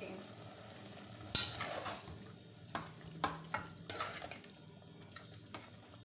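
A spoon stirring chicken mince in tomato sauce in an aluminium saucepan, over a faint sizzle as the sauce cooks down. There is a sharp knock against the pan about a second in, then a string of lighter clicks and scrapes.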